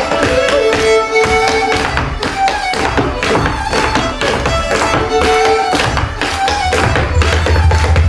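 A live folk band plays a dance tune led by fiddles, with the dancer's hard shoes tapping a quick percussive rhythm on the wooden stage floor. A deep bass note swells in near the end.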